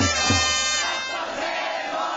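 A Japanese baseball cheering section's trumpets and drum play a batter's fight song with a beat about twice a second. The song stops about a second in and gives way to a large crowd of fans shouting and cheering.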